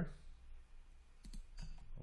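A few short clicks of a computer mouse as edges are selected on screen, about a second in and again shortly after, over faint room hum.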